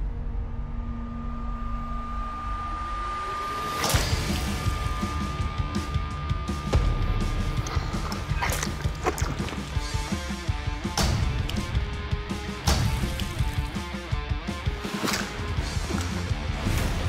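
Dramatic background music, with a held tone for the first few seconds, then a series of sharp sword blows chopping into a ballistic gel dummy, several strikes spread out from about four seconds in.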